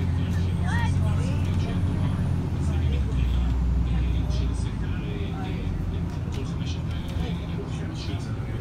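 City bus running along a street, heard from inside the cabin: a steady low engine and road rumble that eases a little about three seconds in, with passengers' voices faint underneath.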